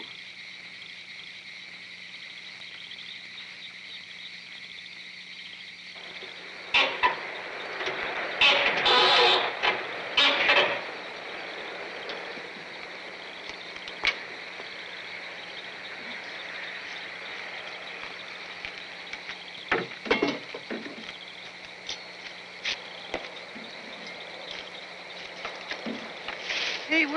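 Steady chorus of crickets chirping. A few louder knocks and clatter break in from about 7 to 11 seconds, with a sharp click near 14 seconds and more knocks near 20 seconds.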